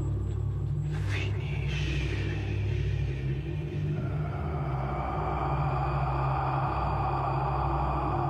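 Dark ambient drone music: a steady low rumbling drone, with a whooshing sweep about a second in and a hissing, swelling texture that builds from about halfway.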